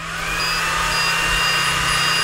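xTool D1 Pro 20 W laser engraver starting an engraving job: a fan-like whir rises over the first half-second and then holds steady, with a thin high whine over it.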